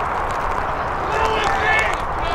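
Teenage rugby players shouting and calling out during play, their raised voices coming in about halfway through, over a steady rush of wind on the microphone.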